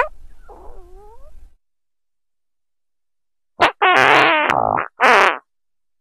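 Fart sound effects: a faint, wavering one at the start, then after a gap three loud pitched farts in quick succession, the middle one the longest.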